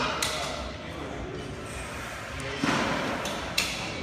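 Handling of a supplement powder packet and a plastic drink bottle: a few sharp clicks and a short rustle a little before three seconds in, over background voices.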